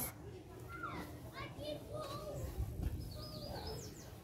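Faint voices of children playing and talking, high and wavering, over a low rumble.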